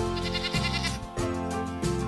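Background music with a goat bleating once over it.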